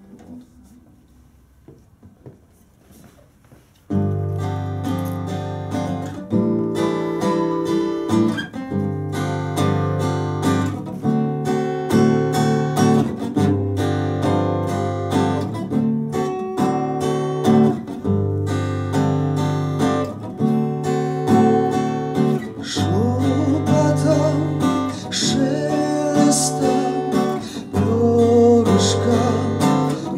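Acoustic guitar starting a song's intro about four seconds in after a quiet pause, playing a repeating pattern of plucked and strummed chords.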